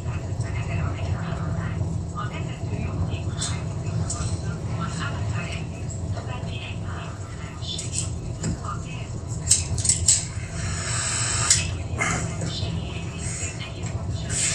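Steady low rumble of an old car's engine and road noise heard from inside the cabin, with a few sharp clicks and a short hiss a little after the middle.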